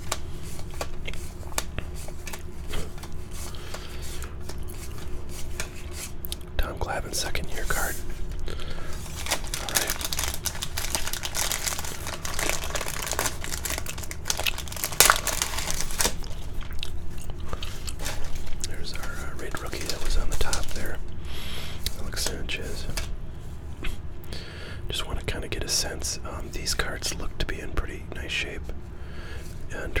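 Close-miked 1989 Donruss baseball cards being flipped and shuffled between the fingers, with plastic rack-pack wrapping crinkling and tearing. There is a burst of crinkling around the middle.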